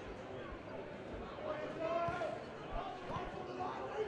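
Faint football-match ambience: distant shouts from players and spectators, with a few dull thumps of the ball being kicked.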